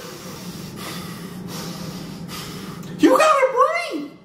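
A man's long breathy exhale, then about three seconds in a wordless voiced exclamation that slides up and down in pitch, a stunned reaction to a singer's long held note.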